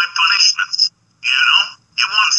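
A thin, tinny, telephone-like voice speaking in two short phrases, with a brief silent break about a second in.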